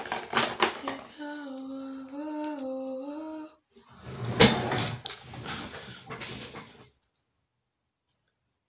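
A young woman humming a short tune close to the microphone, with a few clicks before it. This is followed by a loud knock and rustling, and then the sound cuts off abruptly to silence about seven seconds in.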